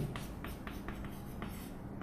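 Chalk writing on a chalkboard: a quick run of short scratches and taps as letters are written.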